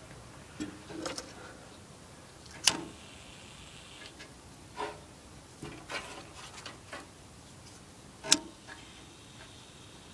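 Scattered light clicks and knocks of kindling and cardboard being handled and pushed into a small metal wood stove's firebox, with two sharper clicks, one a little before a third of the way in and one near the end.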